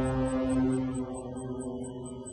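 Film soundtrack: a sustained low drone with rapid high ticks about five a second over it, like a bomb's countdown timer.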